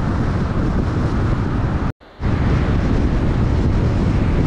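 Steady road and wind noise of a car driving at highway speed, heard from inside the car. About two seconds in, the sound cuts out for a fraction of a second, then resumes.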